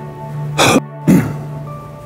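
A man clearing his throat in two short, loud rasps about half a second apart, over soft background music with steady held tones.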